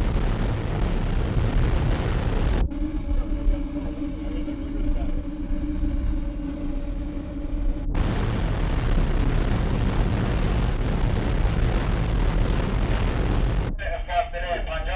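Loud, steady engine noise with a high hiss over it. It cuts off suddenly about two and a half seconds in to a steadier hum with a few held tones, then cuts back to the first noise about eight seconds in.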